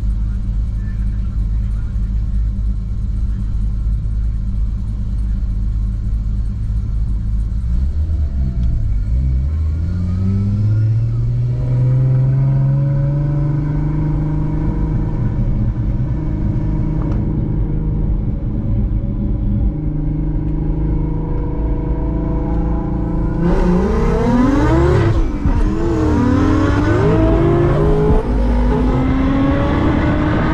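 Toyota Mark II race car's engine heard from inside the cabin. It idles at first, then revs rise as the car pulls away about eight seconds in, and it holds a steady pace. From about three-quarters of the way through it runs at full throttle, louder and with more rush, its pitch climbing and dropping as it changes gear under hard acceleration.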